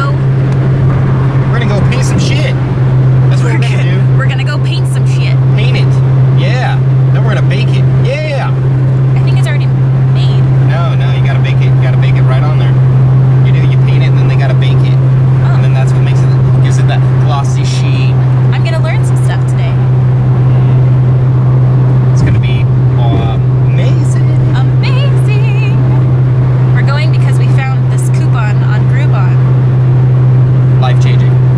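Steady low drone of a car's engine and road noise heard inside the moving cabin, with indistinct voices over it.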